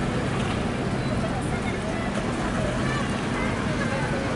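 Outdoor street ambience: a steady rumble of traffic with faint, indistinct voices in the background.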